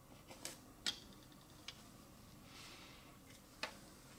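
Faint light clicks and taps as a tripod quick-release plate and a felt-tip marker are handled on galvanized sheet metal. There are about five in all, the sharpest about a second in and another near the end, with a soft scratch of the marker on the metal around the middle.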